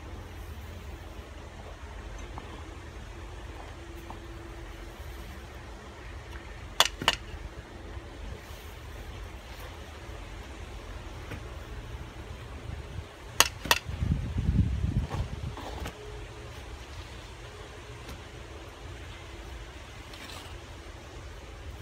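Hard clinks of bricks knocking against each other during brick laying, two quick pairs about seven and thirteen seconds in, over a steady low rumble that swells for a couple of seconds after the second pair.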